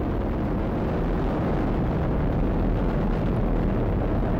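Falcon 9 first stage's nine Merlin 1D engines, a steady, deep rumble as the rocket climbs after liftoff.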